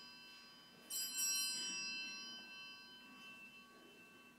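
A small church bell struck twice in quick succession about a second in, its bright, high ringing fading slowly over the following seconds. It is the bell rung to signal the start of Mass as the priest enters.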